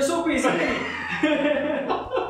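Two men chuckling and laughing, mixed with a little speech.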